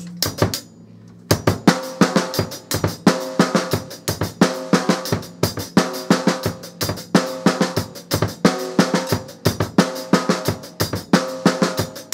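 Drum kit played as a coordination exercise: snare-drum strokes on every beat, with pairs of closely spaced bass-drum hits. A few strokes open, there is a short pause about a second in, then the strokes run on steadily.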